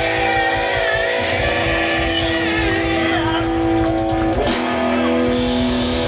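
Hard rock band playing live: electric guitar holding long sustained notes over bass guitar and drums. The band breaks for a moment about four and a half seconds in.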